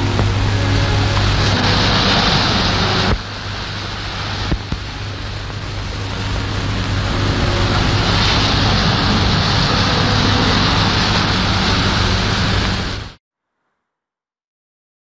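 Surf washing in on an old 1930s film soundtrack, heard as a loud hissing wash over a steady low hum, with faint music underneath. The wash drops back about three seconds in, swells up again, and cuts off abruptly shortly before the end.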